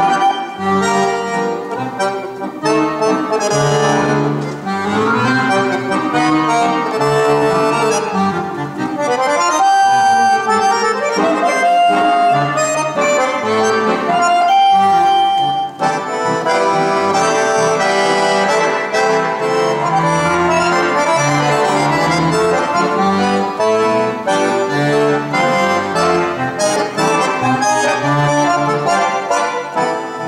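Piano accordion played solo: a quick-moving melody over low bass notes, with a few long held notes near the middle.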